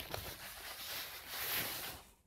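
Soft protective wrapping rustling steadily as it is peeled and pulled off a soundbar, with a few small clicks, stopping suddenly at the end.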